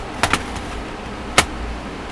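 Plastic snap-fit tabs of a Dell Inspiron 15 3000 laptop's bottom cover popping open as a guitar pick is run along the seam: two quick clicks about a quarter-second in, then a louder, sharper snap about one and a half seconds in.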